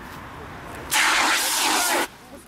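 A handheld fire extinguisher discharging: a loud hissing blast of about a second that starts about halfway through and cuts off sharply.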